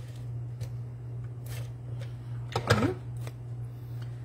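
Cardstock being handled: paper rustling and a few light taps as a card layer is pressed down and the card is picked up, over a steady low hum. A brief wordless vocal sound comes about two and a half seconds in.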